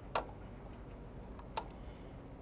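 A few light clicks from handling at a fly-tying vise as the hopper's legs are tied in: one sharper click just after the start, then two fainter ones about a second and a half in.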